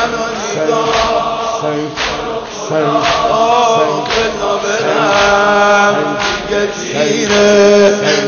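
Muharram noha chanted by a reciter and a large crowd of male mourners in long, sustained lines. Sharp beats fall about once a second in time with the chant: the mourners' unison chest-beating (sineh-zani).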